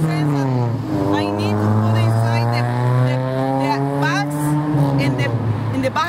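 A heavy road vehicle's engine droning close by in street traffic, its pitch dropping in the first second and then holding steady.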